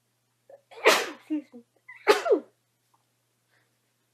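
A woman sneezing twice, about a second apart.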